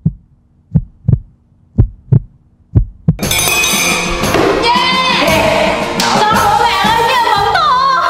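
Heartbeat sound effect: paired low thumps about once a second, a suspense cue. About three seconds in it gives way to loud music with singing.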